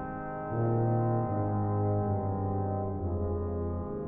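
Soundtrack music of slow, low brass notes, each held for a second or more. The notes change pitch a few times and ease off slightly near the end.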